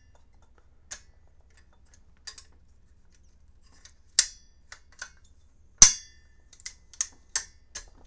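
A series of separate sharp metallic clicks and clinks from an AR-style upper receiver being handled while a seated 6mm ARC round is pushed into its chamber by hand and worked back out, checking whether the cartridge is too long to fit against the rifling. The loudest click comes about six seconds in, with another strong one about four seconds in.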